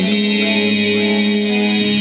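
A man's voice holding one long sung note steadily over looped vocal layers, in an a cappella cover sung into a handheld microphone.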